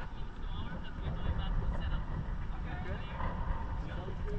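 Indistinct voices of people chatting aboard an open boat, over a continuous low rumble of wind and boat noise.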